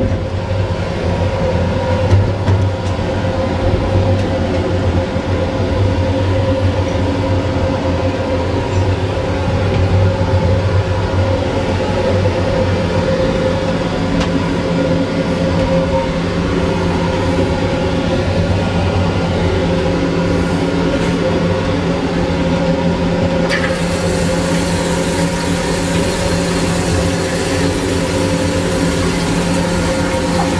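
Steady running noise of a moving Amtrak passenger car heard from inside its lavatory: a continuous rumble with a few constant hum tones. About three-quarters of the way through, a steady high hiss comes in suddenly and carries on.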